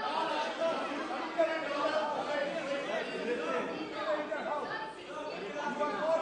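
Several men's voices talking over one another in a large, echoing chamber: members calling out from their seats, too jumbled for any one voice to stand out.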